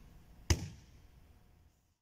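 One sharp slap of a body landing on a grappling mat about half a second in, the hand and leg striking together in a sideways break fall; the sound then cuts out to silence near the end.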